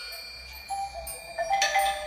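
Instrumental music of sparse, ringing struck notes from a mallet-percussion-like instrument, with a louder group of notes about one and a half seconds in.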